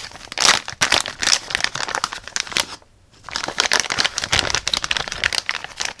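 Thin clear plastic zip bag crinkling and crackling as it is handled, in a dense run of irregular crackles with a short pause about three seconds in.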